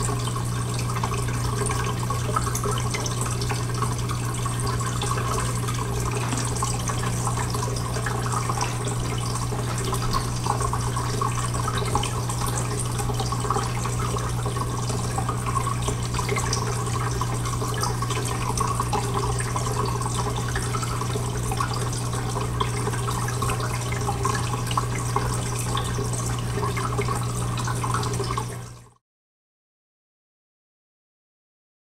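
Water trickling and dripping steadily through a sand-tank groundwater model, over a steady low hum. The sound cuts off abruptly near the end.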